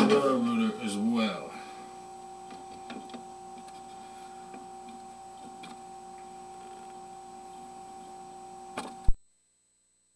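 Faint steady electronic hum at two fixed pitches from the sewer inspection camera system, with a few faint ticks. Near the end comes one loud click, and the sound cuts off to dead silence.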